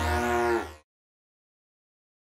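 Synthesized sci-fi sound effect: a low drone under a stack of tones that bend downward, with high sweeps crossing each other, cutting off abruptly less than a second in, followed by digital silence.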